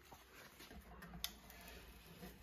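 Near silence: room tone, with one faint sharp click a little past halfway.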